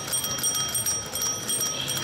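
Cycle rickshaw's domed handlebar bell, rung by its thumb lever in a fast, continuous trill with a few short breaks.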